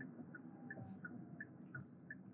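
A car's turn signal clicking steadily and faintly, about three ticks a second, inside the cabin over a low road and engine hum, signalling a left turn.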